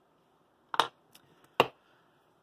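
Two sharp clicks a little under a second apart, with a faint tick between, as small hand tools and a glue bottle are handled on a hard workbench.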